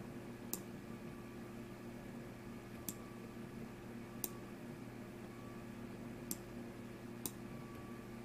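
Five sharp computer mouse clicks, a second or two apart, over a faint steady low hum.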